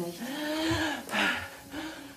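A person's wordless vocal sounds: one long drawn-out groan, then shorter gasping breaths.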